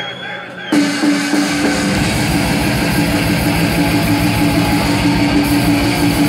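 Live black metal band starting a song: loud distorted guitars come in suddenly less than a second in, holding a long note, and the drums join with rapid kick-drum strokes about two seconds in.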